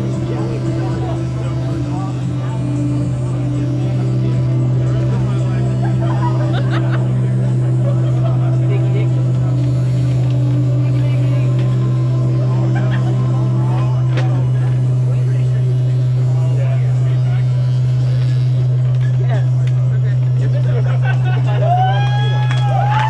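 A steady, loud, low electronic drone with faint crackles and short wavering tones over it, from an amplified experimental solo performance.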